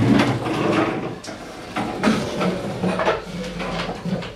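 Indistinct chatter of several people talking over one another, mixed with short knocks and clatter from wooden tables and chairs.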